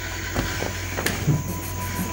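Steady hiss and low hum of room noise, with faint soft movement sounds and a single click about a second in.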